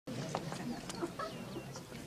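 Outdoor café ambience: a low murmur of diners with a few light clinks and short, high bird chirps.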